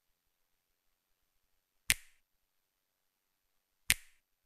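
Two short, sharp hits about two seconds apart, each with a brief ringing tail, over near silence: edited transition sound effects accompanying slide changes.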